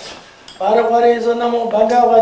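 A male voice chanting a Tibetan liturgy in a steady, near-monotone drone; it breaks off at the start and resumes about half a second in. A short sharp clink sounds near the end.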